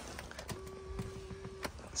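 A BMW X1's electric front-seat adjustment motor runs with a faint steady hum for about a second, moving the seat slowly. A few light clicks come with it.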